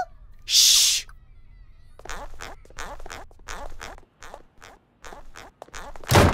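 Cartoon sound effects: a short whoosh about half a second in, then a run of quick, light footsteps, about three a second, growing fainter.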